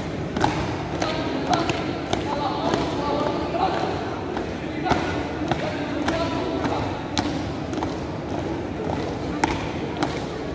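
A drill squad's feet stamping in unison on a hard tiled floor as they march, about two steps a second, over a steady murmur of crowd voices.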